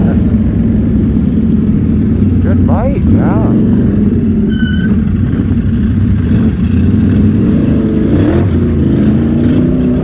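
ATV engine running steadily under throttle while riding, close to the microphone, with a brief high chirp about four and a half seconds in.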